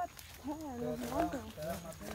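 Quiet talking voices, softer than the nearby speech, with no other clear sound.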